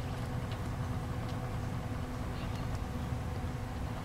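A steady low mechanical hum with a faint steady tone running through it, unchanging throughout.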